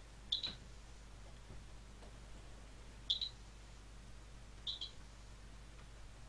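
Faint room tone with a low steady hum, broken by three short double clicks: about half a second in, about three seconds in, and near the five-second mark.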